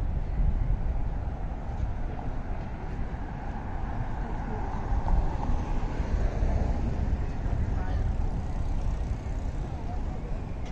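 Outdoor ambience: a steady low rumble with the indistinct voices of people passing by.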